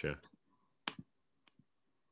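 Computer mouse clicks: two sharp clicks close together about a second in, then a fainter one shortly after, as files are selected in a photo list.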